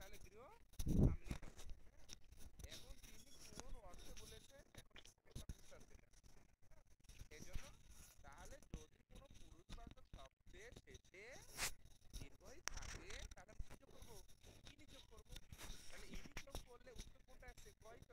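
Faint, indistinct voices with scattered clicks and knocks. A low thump about a second in is the loudest sound.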